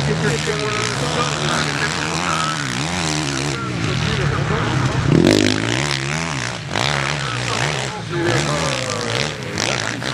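Motocross bike engine revving up and down again and again as the throttle is opened and shut, with its loudest burst about five seconds in.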